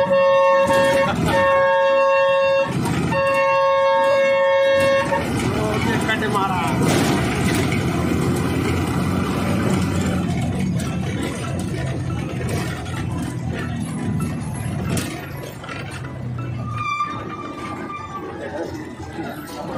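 A loud, multi-tone vehicle horn held for about five seconds, broken twice very briefly. It gives way to the running of a bus engine and street traffic, heard from inside the moving bus, with a short higher horn toot near the end.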